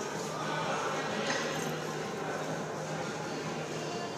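Steady background noise of a weight room, a constant low hum with indistinct voices in the background.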